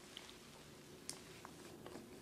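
Near silence: faint room tone with a few soft clicks, the clearest about a second in.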